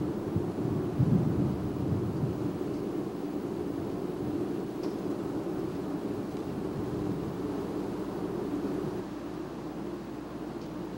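Steady low rumble, with a brief louder surge about a second in.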